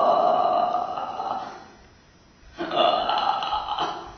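A woman's voice in a wordless improvised vocal performance: a long held note that fades out about a second and a half in, then after a short pause a second, shorter vocal sound for about a second near the end.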